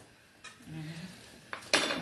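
Stainless steel bowl handled on a cutting board: a light tap about half a second in, then a brief, louder metallic clatter near the end as the bowl is gripped and moved.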